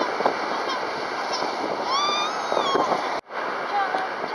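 A baby crying, with one long wail about two seconds in, over a steady rush of surf and wind. The sound drops out abruptly for a moment a little after three seconds.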